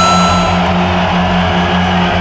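Loud dance music from the venue's sound system heard backstage, muffled and overloaded on the camera mic: an even, pulsing bass beat under a thick wash of crowd and room noise.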